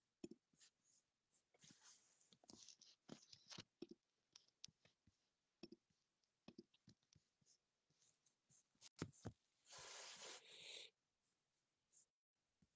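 Near silence with faint scattered clicks and light rustles of a phone being handled, and a short hiss about ten seconds in.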